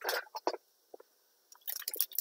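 Clear plastic wrap crinkling in short crackly bursts as it is handled: one at the start, two quick ones soon after, then a rapid cluster near the end.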